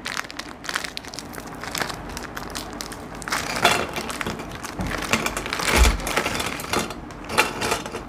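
Plastic biscuit wrapper crinkling and biscuits snapping as they are broken into pieces and dropped into a steel mixer-grinder jar, with small crackles throughout and a dull knock a little before six seconds in.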